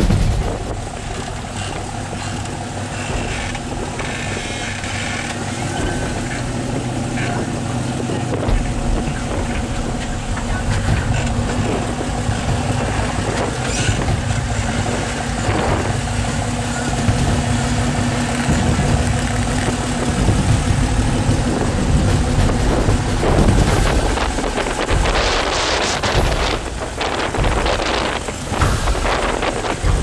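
Jeep Wrangler TJ's 4.0-litre straight-six engine running steadily at low revs as the Jeep crawls up a slickrock ledge.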